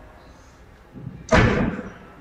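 A single sudden, loud slam a little over a second in, dying away over about half a second.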